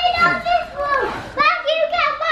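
A toddler's high-pitched excited squeals and shrieks in a few bursts while he is swung onto and bounces on a bed.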